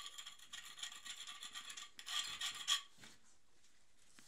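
Stiff-bristled paintbrush scrubbing soil off a pebble mosaic floor: quick scratchy brushing strokes, loudest in the last second before they stop about three seconds in.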